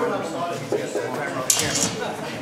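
Steel longsword blades clash once, about one and a half seconds in, with a short metallic ring, over people talking in the background.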